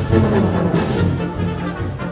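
Punk rock music: a band with electric guitar and drums playing a fast, loud song.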